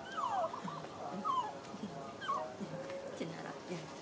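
Baby macaque giving about three short, high whimpering squeals, each sliding down in pitch, in the first two and a half seconds.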